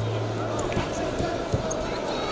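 Wrestling-arena ambience: indistinct voices and crowd noise, with a few dull thuds from the wrestlers' feet and hands hitting the mat and each other as they hand-fight. A low steady hum stops under a second in.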